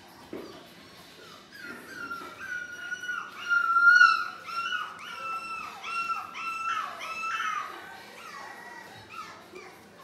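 Four-week-old Labrador puppies whining in a quick run of high-pitched cries, one after another, starting about a second and a half in and loudest about four seconds in. The cries die away by about seven and a half seconds.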